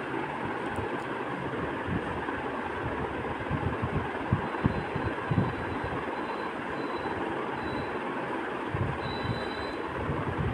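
Chopped onions sizzling steadily in hot oil in an aluminium wok, with a few soft low knocks in the middle.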